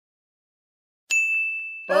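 A single bright ding, a sound effect over the intro logo, about halfway through after silence, ringing on one high pitch and fading for most of a second.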